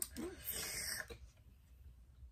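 A person eating chile-coated candy: a brief hummed 'mm', then a breathy hiss about half a second in that lasts half a second, followed by faint chewing clicks.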